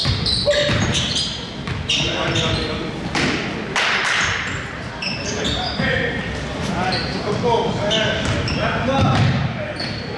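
Basketball being dribbled on a hardwood gym floor, with sneakers squeaking in short high chirps and players calling out during play.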